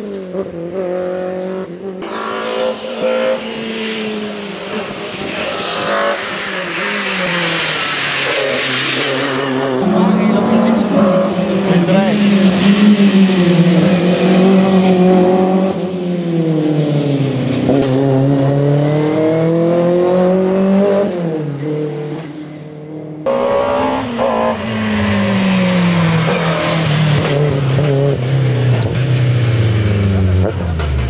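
BMW M3 (E30) hill-climb race car's engine revving hard, its pitch climbing through the gears and dropping back on lift-off again and again. The sound jumps abruptly a few times as shots from different roadside spots are cut together.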